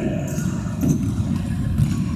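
Indoor futsal play in a sports hall: a steady low rumble of players running on the court and hall noise, with two sharp knocks of the ball being kicked, about a second in and near the end.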